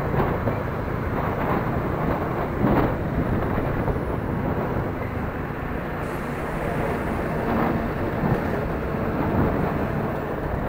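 Steady rush of road noise from a moving motorbike: wind and engine running at an even cruise.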